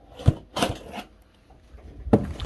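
A corrugated cardboard box being set down and shifted on a wooden table: three knocks in the first second, the first and loudest about a quarter second in, then quieter handling.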